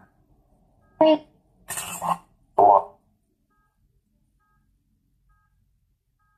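Necrophonic spirit-box app putting out three short, chopped voice fragments in quick succession, the middle one hissy, then nothing.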